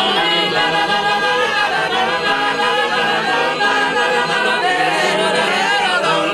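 Massed Genoese trallalero choir singing polyphony a cappella, many male voices holding and sliding between sustained chords. It includes the 'chitarra' voice, sung with a hand held against the mouth to imitate a guitar.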